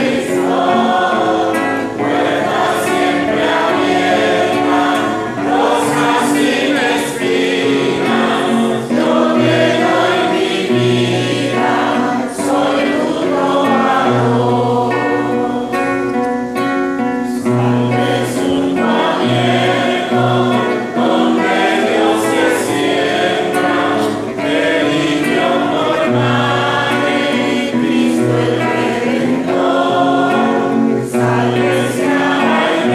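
Congregation singing a hymn to the Virgin Mary together, a steady sung melody carried by many voices.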